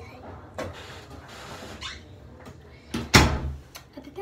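Faint rustling close to the microphone, then one loud thump a little after three seconds in.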